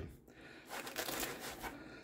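Faint rustling and scuffing of hands moving over a tabletop and against a nylon fabric magazine placard, starting a little under a second in.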